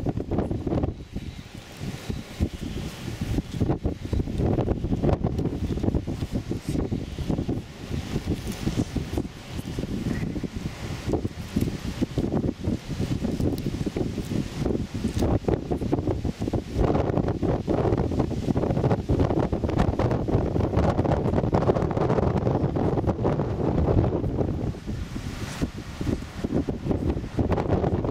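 Wind buffeting the microphone in uneven gusts, growing stronger past the middle of the stretch.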